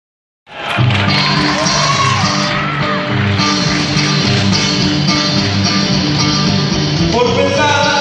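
Live band music played through a PA system, with a voice singing over acoustic guitar and a steady bass beat. The sound cuts in abruptly about half a second in.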